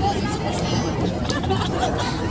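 Indistinct chatter and calls from several people on and around a soccer field, over a steady low rumble.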